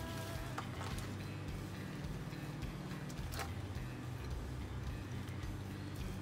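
Soft background music with a steady low line. A few faint clicks come from plant cuttings and packaging being handled.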